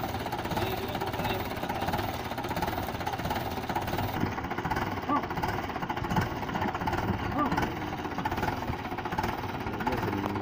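Mahindra 575 DI tractor's diesel engine idling with an even clatter, while several people talk around it.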